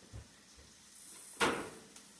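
A single sharp knock about one and a half seconds in, with a faint duller thump near the start, over the faint sizzle of diced onion sautéing in butter in a pan.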